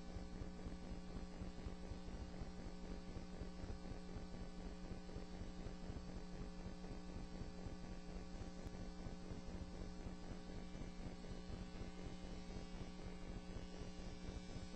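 Steady electrical mains hum with a faint hiss on the recording's audio feed, unchanging throughout.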